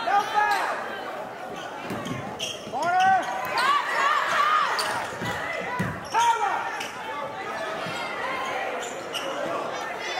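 A basketball being dribbled on a hardwood gym floor, its bounces echoing in the gym, with voices calling out from players and the crowd.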